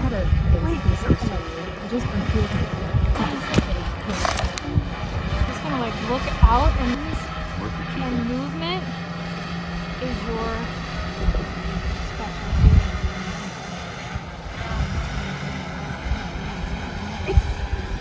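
Wind buffeting a phone's microphone: a gusty low rumble that rises and falls, with faint distant voices underneath.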